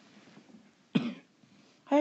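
A person gives one short cough, about a second in, before starting to speak.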